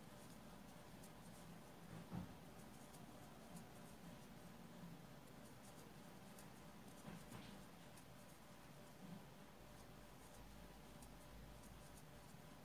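Near silence, with a few faint, short ticks and scratches from a crochet hook working soft cotton yarn in single crochet.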